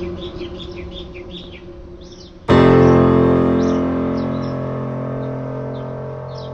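Keyboard background music: a quiet passage fades, then a loud chord is struck about two and a half seconds in and rings out slowly. Birds chirp over it throughout.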